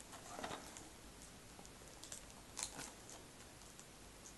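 Faint handling of a DVD case and its packaging: a short crinkle about half a second in, then a few sharp clicks and ticks around two and a half seconds.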